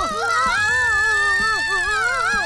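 A cartoon sound effect of several wavering, wobbling pitches, like a flying or buzzing whir, loud and continuous.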